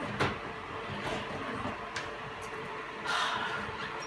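Quiet room noise with a few light clicks and knocks, and a short rustle about three seconds in.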